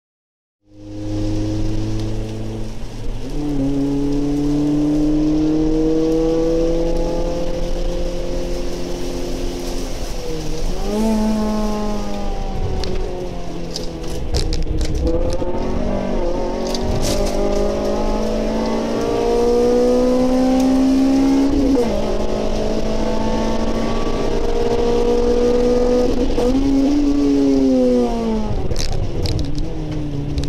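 Honda Civic Type R FN2's 2.0-litre four-cylinder engine heard from inside the cabin under hard driving, the revs climbing slowly through each gear and dropping at gear changes or lifts about every five to seven seconds.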